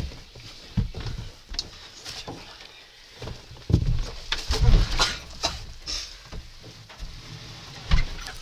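Irregular thuds and scuffling of people wrestling, with sharp knocks in between; the heaviest thumps come about four to five seconds in and again at the very end.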